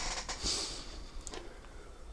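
A quiet pause in a man's narration: low room tone, with a soft breath about half a second in.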